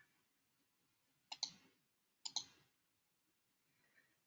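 Two sharp clicks about a second apart in near silence, each a quick double tick, from a computer's controls as a presentation slide is advanced.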